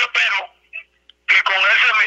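Speech over a telephone line: a voice talking in two stretches with a short pause between them.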